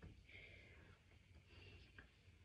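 Near silence: room tone with two faint soft rustles.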